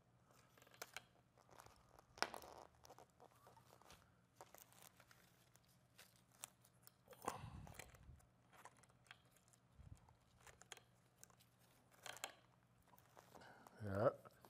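Faint, sporadic rustling and crackling of hands working dry sphagnum moss, fern fronds and fishing line on a wooden board, with a slightly louder rustle about seven seconds in. A low steady hum runs beneath.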